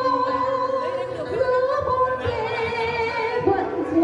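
A woman singing into a microphone over backing music, amplified through a PA system, with long held notes and vibrato.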